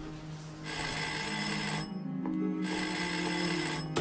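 Old wall-mounted telephone ringing on its twin bell gongs: two rings of about a second each, with a short pause between.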